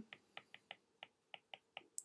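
Faint clicks of a stylus tapping on a tablet screen while handwriting, about nine light ticks over two seconds.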